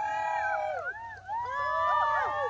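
Several voices holding long drawn-out notes that rise and fall and overlap one another, with a dip about a second in.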